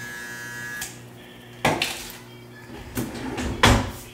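Electric hair clippers buzzing, switched off less than a second in, followed by two short knocks or clatters from handling, the second one louder near the end.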